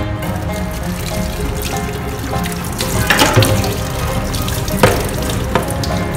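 Tap water running into a stainless steel sink as a greasy frying pan is scrubbed and rinsed, with a couple of sharp clatters of the pan against the sink, about 3 and 5 seconds in. Background music plays throughout.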